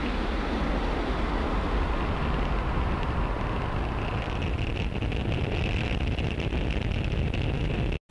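Falcon 9 first stage's nine Merlin 1D engines during ascent, heard from a distance as a steady deep rumble. About halfway a higher hiss with faint crackle joins in, and the sound cuts off abruptly at the end.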